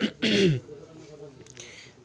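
A man clears his throat once, a short voiced rasp with a falling pitch at the start, followed by a faint breathy sound near the end.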